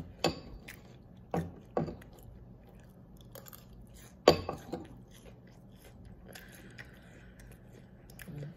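A person chewing a mouthful of crunchy cinnamon cereal with milk: soft scattered crunches, with a few louder ones about one and a half, two and four seconds in.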